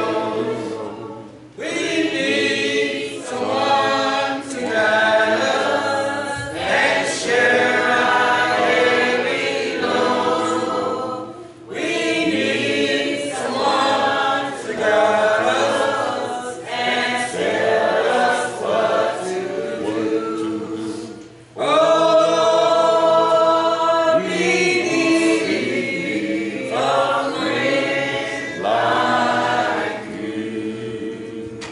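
A church congregation singing a hymn together without instruments, in long sung phrases with short pauses about every ten seconds.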